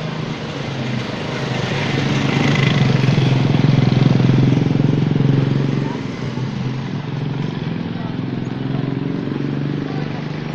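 Motorcycle engine running in street traffic. It grows louder from about a second and a half in, peaks around four seconds, and eases back to a steady hum about six seconds in.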